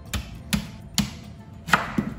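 Chef's knife chopping through a yuca (cassava) root and knocking onto a wooden cutting board: several sharp knocks, about one every half second.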